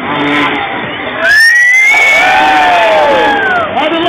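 Crowd cheering, joined about a second in by a loud motocross bike engine revving up and down for about two seconds.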